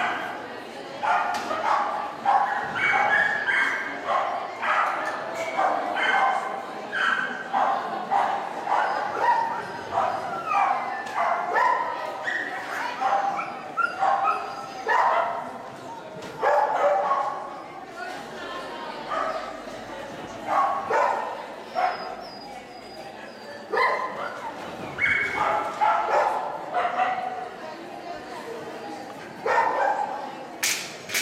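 A dog barking in short, rapid barks, several a second with brief pauses, as it runs an agility course, mixed with a handler's called commands.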